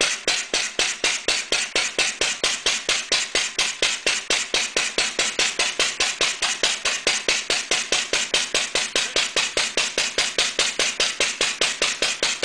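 Bamford OV vertical stationary engine running steadily while driving a Millars sludge pump: an even, unbroken beat of sharp strokes, about four to five a second.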